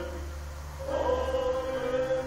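Slow hymn sung by a church choir and congregation in long held notes. The notes die away at a break between lines, and a new phrase comes in about a second in.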